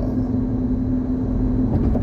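Steady road and engine noise inside a moving car's cabin: a low rumble with a constant hum.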